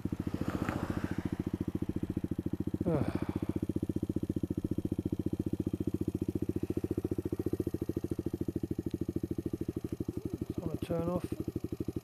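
Sinnis Blade X trail bike's single-cylinder engine idling in neutral, a steady, fast, even putter. A short rise and fall in pitch cuts across it about three seconds in, and a brief voice-like sound comes near the end.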